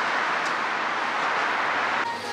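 Steady city street noise: an even hiss of traffic with no distinct events, ending abruptly at a cut.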